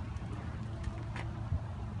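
A low, steady rumble with a few faint clicks and a low knock about one and a half seconds in, as a composite-body ultrasonic water meter clamped in a pipe vise is wrenched by hand.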